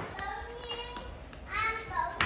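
A young child's high-pitched voice: faint vocalising early on, then a louder, short call or babble about one and a half seconds in.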